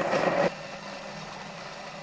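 Thermomix food processor motor blending peach pieces at speed 5. There is a loud rush for about the first half second as the blades hit the fruit, then a steadier mechanical hum, which stops suddenly near the end.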